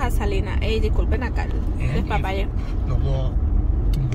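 Steady low rumble of a car heard from inside the cabin, with short bits of indistinct voices over it.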